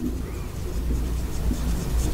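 Marker writing on a whiteboard, with faint strokes over a steady low background hum.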